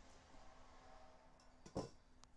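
Near silence with a faint steady hum, broken near the end by a single short clack as a metal handheld hole punch is set down on a hard tabletop.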